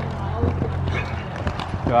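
Hoofbeats of a horse cantering on the sandy arena footing, a run of uneven knocks over a steady low hum.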